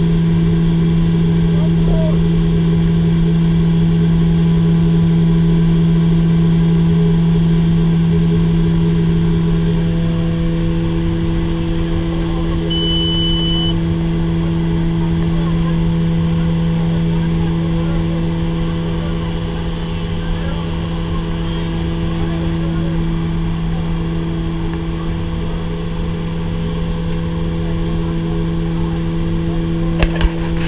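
Steady drone of a Short SC.7 Skyvan's twin turboprop engines and propellers heard from inside the unpressurised cabin in flight, a low steady hum over a broad rumble that eases slightly in the second half. A brief high beep sounds a little before the middle.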